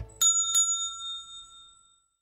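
A small bell rung twice in quick succession, the two strikes about a third of a second apart, its high ring fading away over about a second and a half.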